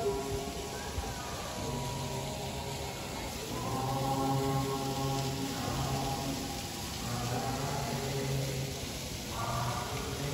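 Background music of chant-like singing with long held notes, over a faint wash of falling water.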